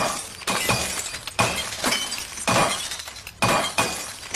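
Glass bottles thrown and smashing one after another: about five sudden crashes of breaking glass, roughly one a second.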